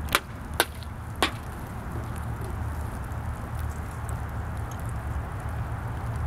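A long wooden stick knocks three times, sharply, in the first second and a half, then a steady low rumble carries on.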